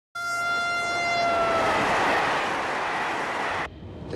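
A train passing at speed, its horn sounding one held note that sags slightly in pitch as it goes by and fades after about two seconds, under a rush of wind and rail noise. The sound starts and cuts off suddenly, the cut falling just before the end.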